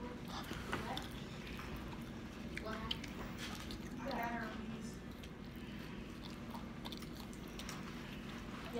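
Close-up chewing of chicken nuggets and fries, with small mouth clicks scattered through. Brief faint voices come in about three and four seconds in.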